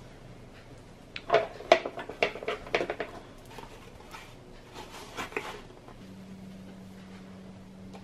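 A sanded plastic engine-bay cover handled and wiped down with a microfiber towel: a quick cluster of knocks and scuffs of hard plastic against a glass desktop, then a few lighter ones. A faint steady hum comes in near the end.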